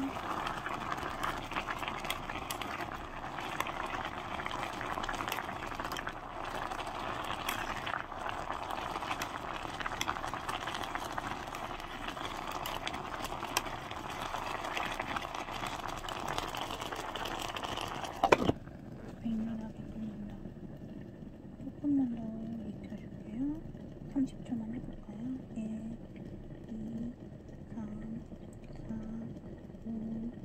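Ramyeon and dumplings boiling hard in a small electric pot, a steady crackling, bubbling hiss. About eighteen seconds in there is a sharp click as the glass lid goes on, and the boiling continues much more muffled, with short low hums over it.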